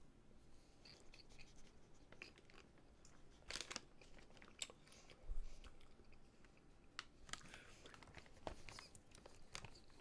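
Faint, scattered crunches of a person chewing popcorn: a handful of short, irregular crisp clicks spread over several seconds.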